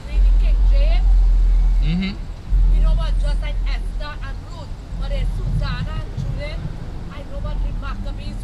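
Indistinct voices of people talking over a loud, very deep rumble. The rumble starts suddenly at the beginning, breaks off for about half a second around two seconds in, then carries on.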